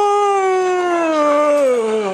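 A man's long, drawn-out wail of "Nooo" in disappointment. It is held high and then slides slowly down in pitch, dropping away near the end.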